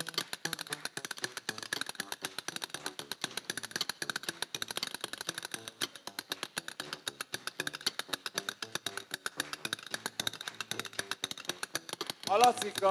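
Drumsticks rapidly tapping a microphone and its metal stand, a fast, even run of sharp clicks heard through the PA, over an upright bass line in rockabilly style.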